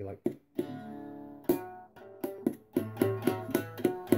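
Homemade three-string shamisen-style instrument played clawhammer style, the strings struck downward with a pick worn on the finger. A run of sharp plucked notes that ring on, coming quicker in the second half.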